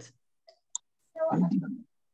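Two short, faint clicks, then a brief burst of unclear voice heard over an online video call.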